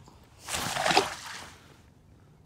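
A lake trout being released over the side of a kayak: a splash and slosh of lake water starting about half a second in and dying away within about a second.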